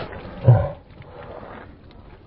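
Water from a thrown bucket splashing down over a man and falling away, then a short loud low yell from him about half a second in as the water hits him.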